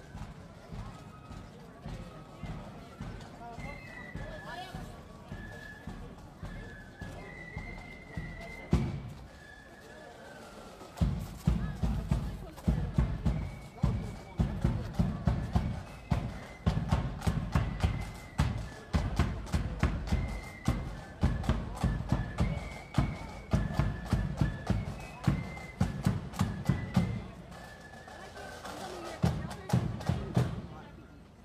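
Marching band music: a melody line played throughout, with loud, steady drum beats coming in about a third of the way through.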